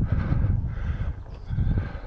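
A hiker breathing hard from a steep uphill climb, heavy puffing breaths about a second apart.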